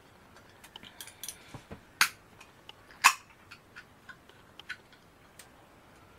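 Small clicks and ticks of a metal drink can being handled, with two sharper clicks about a second apart, around two and three seconds in, as its pull tab is worked open.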